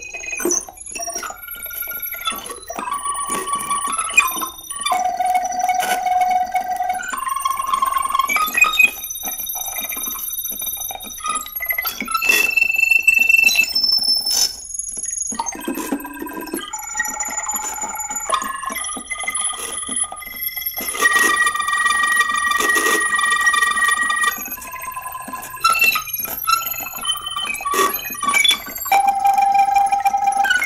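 Electronic synthesizer tones played live from wearable hand and mouth controllers: bright, bell-like beeps and held notes jumping from pitch to pitch in a shifting pattern. Some notes hold for a second or two, others flicker past quickly.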